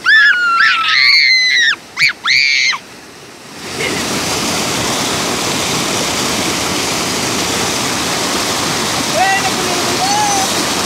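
A voice calls out a few times, then from about four seconds in there is a steady rush of floodwater pouring through a breach in an earthen bank into a pond. A brief call comes again near the end.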